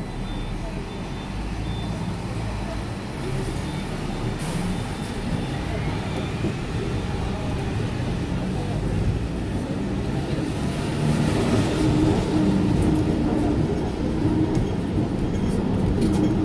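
Hong Kong double-decker electric tram running along its rails, heard on board: a steady rumble that grows gradually louder over the stretch.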